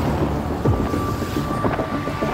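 Wind buffeting the microphone over the rush of choppy seawater around a Dragon keelboat sailing hard upwind.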